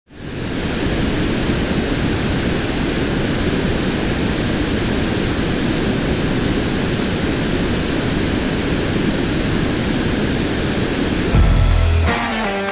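A steady, even hiss of noise; near the end a deep bass hit lands as guitar-driven music starts.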